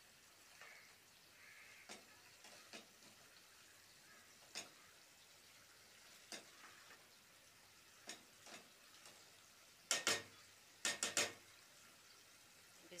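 A spatula stirring minced meat in an aluminium pot, knocking against the pot every second or two, with a quick run of louder knocks near the end. Under it a faint sizzle comes from the mince cooking in its remaining water.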